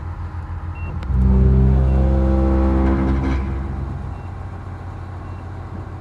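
Liebherr crane's diesel engine speeding up from idle about a second in, holding a steady higher speed for about two seconds, then easing back down. The engine is taking load from the hydraulics as the counterweight is lowered. Faint short beeps sound about once a second.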